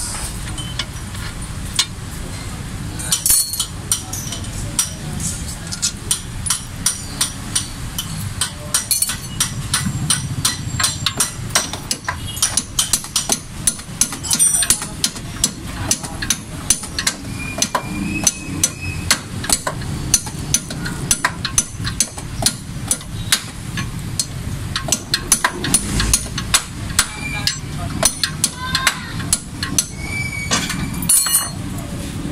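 Sharp metallic clicks and clinks, a few a second and irregular, from a hand wrench and tools working the long through-bolt of a car's front lower control arm bushings, over a low background rumble.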